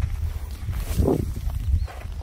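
Footsteps walking across open farm ground, as irregular short strokes under a steady low rumble, with one brief sound about a second in.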